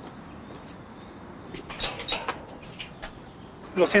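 High-heeled sandals clicking on a concrete sidewalk in a quick run of steps, starting past the middle, over a steady outdoor background hum. A man's voice starts right at the end.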